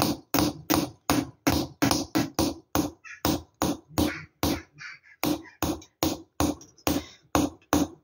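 Small hammer tapping a chasing chisel into a copper plate to engrave its pattern: sharp metallic taps at about three a second, a few lighter ones in the middle.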